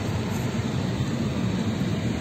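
Steady cabin noise inside an Airbus A320 airliner: an even low rumble with a hiss over it, with no break or change.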